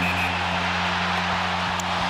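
Arena goal horn sounding one long, low, steady blast over a cheering crowd, marking a home-team goal.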